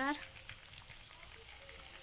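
A spoken word trails off at the start, then only faint, quiet room tone with no distinct sound.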